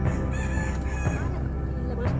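A rooster crowing once, a high, drawn-out call lasting about a second, over background music with a low steady drone.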